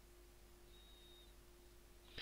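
Near silence: faint recording hiss with a steady faint hum, and a brief faint high tone about a second in.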